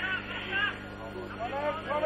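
Distant shouts and calls from players and spectators around an outdoor football ground, short scattered voices over a steady low electrical hum.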